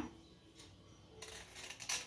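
Faint crinkling and small clicks of plastic food packaging being handled. They start a little over a second in, after a quiet moment.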